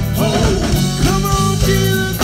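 Live gospel vocal group singing over a band of keyboard, bass guitar and drums, with sung notes held for about a second in the middle.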